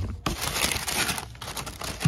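Tissue paper crinkling and rustling as a sneaker is pulled out of its wrapping in the shoebox, with a short knock at the start.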